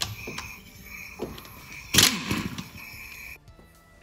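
Air ratchet loosening a bolt on a CVT valve body, running in three short whining spurts with a loud metallic clank about two seconds in.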